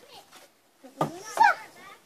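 A single sharp hit about a second in, a knife or hand striking a hanging cardboard box, followed by a child's short wordless shout that rises and falls in pitch.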